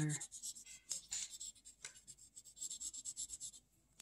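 Colored pencil scratching across paper in quick, short shading strokes, stopping shortly before the end.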